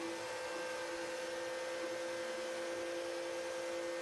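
Electric power sprayer running steadily, its pump motor giving a constant two-note hum under the hiss of the water jet spraying the aircon's aluminium evaporator fins.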